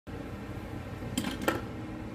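Steady low hum of a workshop's background, with two short knocks a little past the middle, the second one louder.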